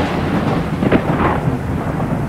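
A loud, low rumble like a thunder sound effect, slowly fading away, with a few faint crackles in it.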